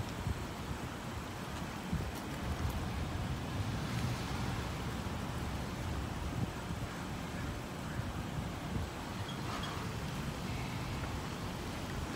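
Wind on the microphone: a steady low rumble and hiss of outdoor noise.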